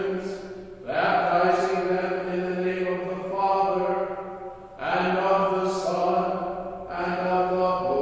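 A bishop chanting a liturgical text solo, one male voice holding long steady notes on a few pitches. He sings in phrases several seconds long with short breaths between them, about a second in, near five seconds and near seven seconds.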